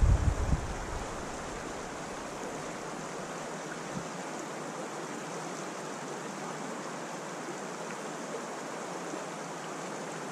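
Creek water flowing steadily over a shallow riffle. A low rumble of wind on the microphone dies away in the first second.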